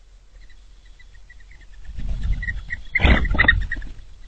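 Small birds calling: a quick series of short, high chip notes, then a louder, harsh burst of calling about three seconds in, over a low rumble.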